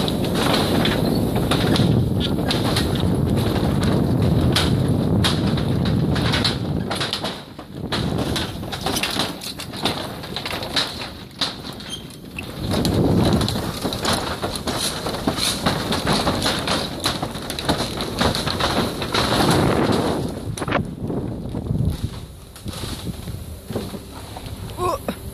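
Car tyres rolling slowly over the loose wooden deck planks of a suspension bridge: a low rumble with many irregular knocks and clacks as the boards shift under the wheels.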